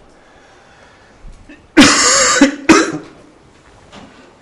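A man coughing twice about halfway through: a longer cough followed by a short one, part of a persistent coughing fit.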